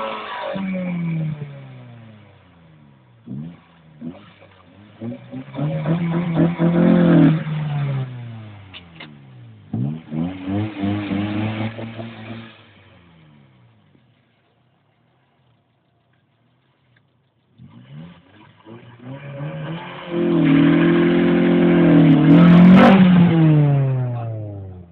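Honda Civic Si's four-cylinder engine revved hard in repeated bursts for a burnout, its pitch climbing and then falling away each time. The sound cuts out completely for a few seconds past the middle, then comes back in the longest and loudest rev near the end.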